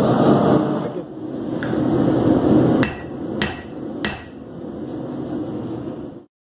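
A steady roar, fitting the lit gas forge's burner, for the first few seconds, then three sharp hammer strikes on metal, a little over half a second apart, each with a brief ring.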